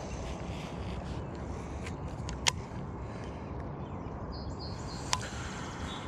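Outdoor ambience: a steady low rush, broken by two sharp clicks about two and a half and five seconds in, with a few faint high chirps shortly before the second click.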